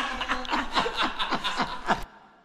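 A person laughing in a quick, even run of chuckles, about seven a second. It cuts off abruptly at the end.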